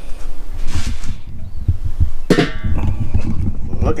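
Handling and wind rumble with knocks, and the steel lid of a Weber kettle grill lifted off with a sharp metallic scrape and a brief ring about two and a half seconds in.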